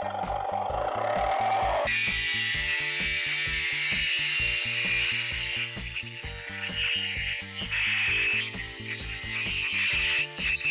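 Milwaukee M18 FBJS cordless jigsaw in auto mode, starting with slow strokes and then, about two seconds in, jumping to full speed as the blade bites into the board and cuts a curve. Background music plays along.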